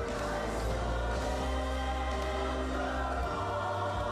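Worship music: a group of voices singing together over sustained chords and a low bass note, which drops out a little after three seconds in.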